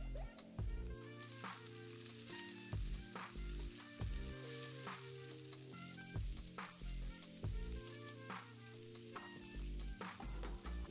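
Cooked basmati rice sizzling in oil in a nonstick pan, with a metal spatula stirring and scraping it through the masala in short strokes. Background music with a low beat plays underneath.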